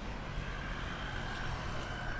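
City road traffic: a steady rumble of passing cars, with a high steady whine joining about half a second in.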